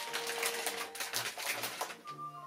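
Cellophane wrapping crinkling and crackling as a wrapped gift bag of chocolates is handled, a quick irregular run of small crackles throughout.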